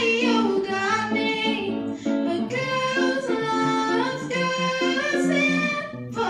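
A young woman singing a pop song solo into a handheld microphone, with held, wavering notes, accompanied by chords on an electric guitar.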